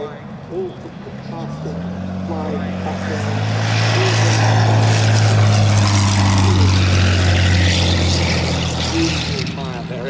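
Supermarine Spitfire's Rolls-Royce Merlin V12 engine and propeller passing low on landing approach with the undercarriage down. The engine note builds, is loudest in the middle, and fades near the end.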